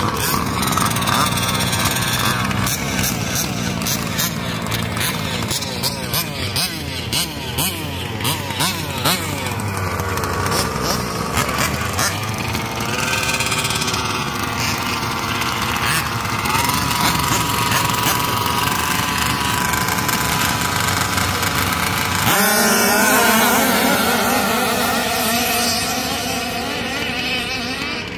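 Small engines of 1/5-scale RC buggies revving up and down as the cars race around the field, with the pitch rising and falling continuously. The sound grows louder and closer about three-quarters of the way through.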